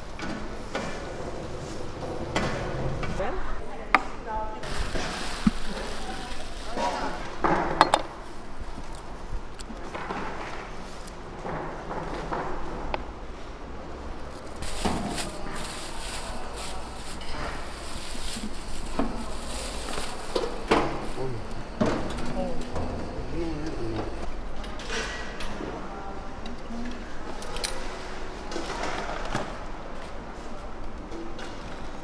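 Busy street-market bustle: background voices and chatter with scattered clinks and knocks of handling, a few sharp knocks standing out in the first eight seconds.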